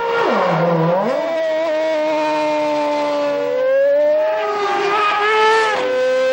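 Mercedes Formula One car's 2.4-litre V8 engine running at high revs on track. Its pitch falls and recovers in the first second, climbs through the middle and drops again near the end, as the car slows and accelerates.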